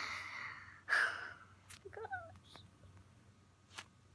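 A girl sighing: two breathy exhalations about a second apart, then a brief faint murmur.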